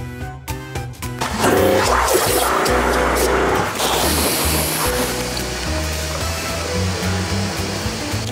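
Background music with a steady beat over a rushing hiss of water that starts about a second in: water jetting into a bucket of pH-neutral car shampoo, whipping it into thick suds.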